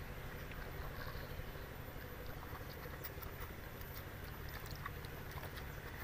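Two goats drinking from a basin, with faint, irregular slurping clicks over a steady low rumble.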